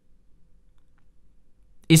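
A pause in a man's lecture, holding only a faint low background hum. His speaking voice comes back just before the end.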